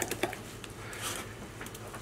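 Metal spoon stirring a stiff, dough-like plaster mix in a glass measuring cup: faint scraping with a few light clicks against the glass.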